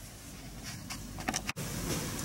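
Quiet room tone with a low steady hum and a few faint clicks, broken by a momentary dropout to silence about three-quarters of the way through, where the recording is cut.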